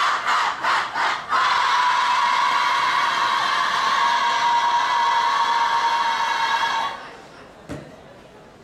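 A group of students yelling together: a few short shouts, then one long sustained yell that cuts off about seven seconds in.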